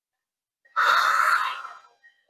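A woman's heavy, breathy exhale under exertion during a floor core exercise, about a second long and fading out.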